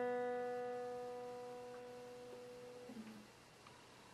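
A single plucked guitar note rings out and slowly fades. It is damped about three seconds in, with a faint touch of the strings.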